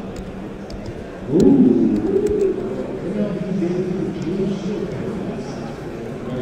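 A man's low, wordless voice, with a held pitch that bends slowly up and down, starting about a second in.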